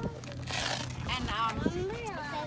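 People talking in the background, a steady low hum beneath.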